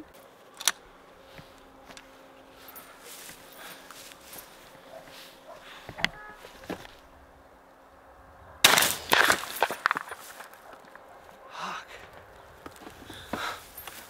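A single shot from a single-barrel 12-gauge shotgun about eight and a half seconds in, by far the loudest sound, trailing off in echo for about a second. A couple of sharp clicks come earlier.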